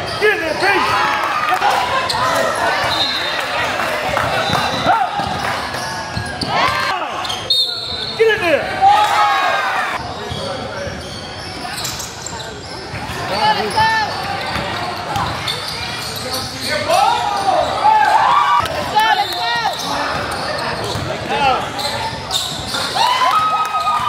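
Gym sounds of a youth basketball game: a basketball bouncing on the court floor amid overlapping shouts and chatter from players and spectators, echoing in a large hall.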